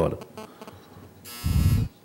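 A loud electric buzzer sounds once, about a second and a half in, for about half a second, and cuts off sharply. It is the chamber's speaking-time signal, marking the end of the speaker's allotted time.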